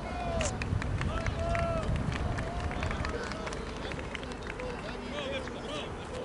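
Players and onlookers calling out across an open football pitch, short distant shouts heard over a steady low rumble, with a few sharp knocks.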